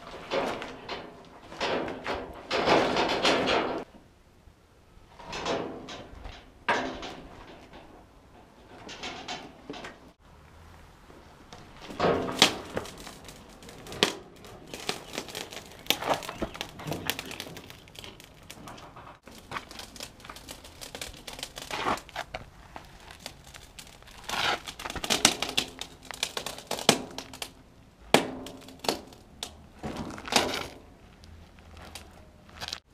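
Steel trailer rails and supports being handled and shifted: clusters of metal clanks, knocks and scraping, broken by short quieter gaps.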